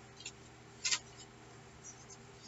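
Sheets of painted paper rustling and sliding as they are handled, a few short rustles with the clearest about a second in, over a faint steady hum.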